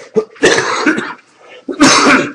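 A person coughing twice: one cough about half a second in and another near the end.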